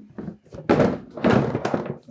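Hard plastic Milwaukee Packout tool box being handled: its lid is shut and the box shifted, giving a quick run of loud plastic thunks and clatters in the second half.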